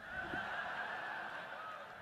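Background sound coming down a telephone line during a pause in a call, with the thin, narrow sound of a phone connection. A steady, slightly wavering tone sits over a low hiss.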